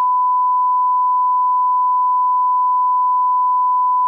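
Line-up test tone played with colour bars: one pure, steady beep at a single unchanging pitch.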